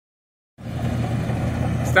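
Combine harvester running steadily while harvesting barley, a low even drone that starts about half a second in.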